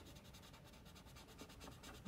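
Faint scratching of a felt-tip marker stroking back and forth on paper as a letter is coloured in.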